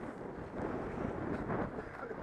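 Wind buffeting the microphone of a helmet-mounted camera, a steady rushing noise.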